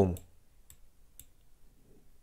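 Two faint computer mouse clicks, about half a second apart, as the Google Earth globe is navigated.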